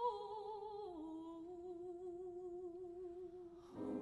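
A solo soprano voice sings long held notes with a wide vibrato, stepping down to a lower sustained note about a second in. Just before the end, a low sustained chord comes in underneath.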